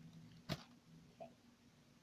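A single sharp knock about half a second in, a brief hard contact on the counter.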